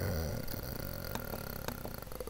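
A drawn-out hesitant "uh" trails off at the start, then a few faint clicks from a computer mouse as the on-screen document is scrolled to the next page.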